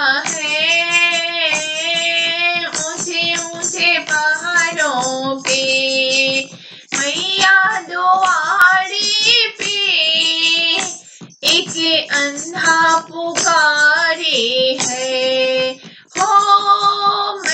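A high voice singing a Hindi devotional bhajan melody with sliding, ornamented notes over musical accompaniment, with brief breaks between phrases about six and a half and eleven and a half seconds in.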